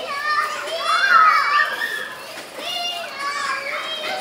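Children's high-pitched voices calling out as they play, rising and falling in pitch, loudest about a second in.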